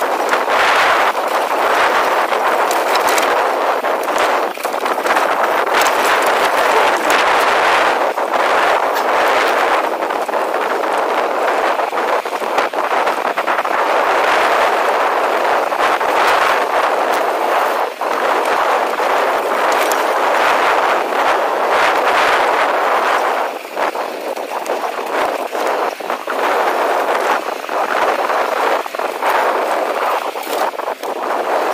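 2015 Intense Tracer T275c mountain bike riding down a dry, rocky dirt singletrack, heard from a chest-mounted action camera: a steady rush of tyre and wind noise with frequent clicks and rattles from the bike over rocks. It eases a little in the last few seconds.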